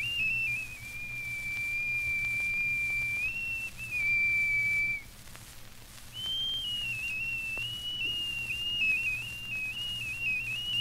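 A high, pure, whistle-like wind instrument of the old Mexican ensemble playing long held notes that shift in small steps, breaking off about halfway and coming back a little higher about a second later. Faint clicks and a low hum from the 78 rpm record run underneath.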